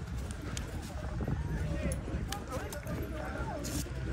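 Indistinct voices of people talking, with a few knocks of a racehorse's hooves as it walks close by on the dirt track.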